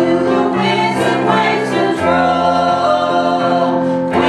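A small gospel vocal group of women and a man singing a hymn in harmony, accompanied by a digital piano.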